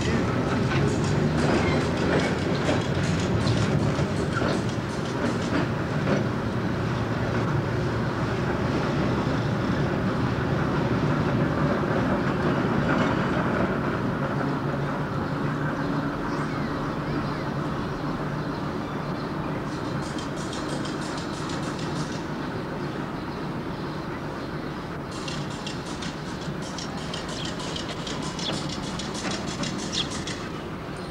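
Electric interurban railcar running on rough street track, its wheels clicking over rail joints, the rumble slowly fading as it draws away. Two spells of sharp rapid clicking come in the second half.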